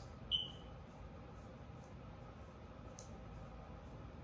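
Quiet room tone in a pause between speech, with one brief high-pitched chirp just after the start and a faint click about three seconds in.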